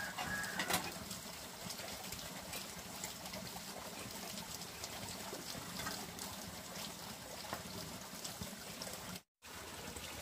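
Water running steadily from a bamboo pipe spout and splashing down onto a bamboo platform at the water's edge. A short metallic clink comes within the first second as a metal tray is handled.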